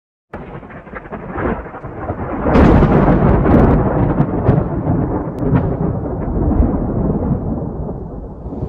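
A rumble of thunder, used as an intro sound effect. It comes in low and swells sharply about two and a half seconds in, with crackles through the loudest part, then slowly dies away.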